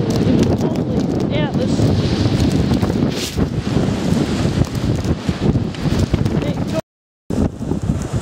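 Strong blizzard wind gusting over the microphone: a loud, dense buffeting that swells and eases and drowns out other sound. It cuts out for about half a second near the end.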